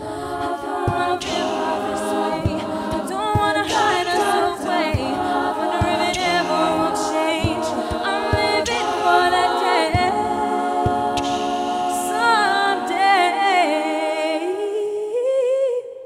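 Women's a cappella group singing in close harmony into microphones, over a beatboxed pulse of low, evenly spaced thumps. The voices cut off together just before the end.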